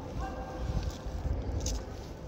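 Handling noise from a phone's microphone rubbing and bumping against clothing: a low, uneven rustling rumble. A faint thin held tone sounds through the first second or so.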